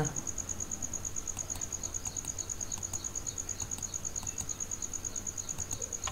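A steady high-pitched trill pulsing evenly about ten times a second, with a few faint mouse clicks about one and a half to two and a half seconds in.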